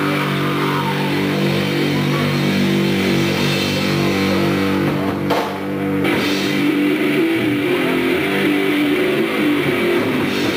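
Grindcore band playing live: heavily distorted guitar with drums in a dense, loud wall of sound, which drops out briefly about halfway through before carrying on.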